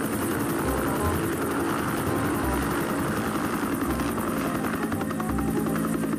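Two-bladed Bell utility helicopter lifting into a low hover and flying off, its rotor chopping steadily over the turbine engine noise.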